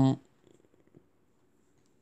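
A man's held "um" that trails off just after the start, then near silence: faint room tone.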